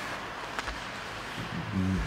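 Ice hockey rink ambience: a steady, even hiss of skates on the ice, with a faint knock about half a second in.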